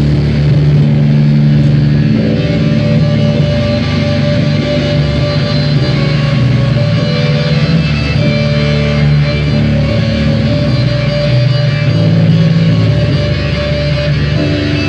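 Live instrumental rock band playing loudly: amplified electric guitars hold long chords that change every couple of seconds, with no clear drumbeat.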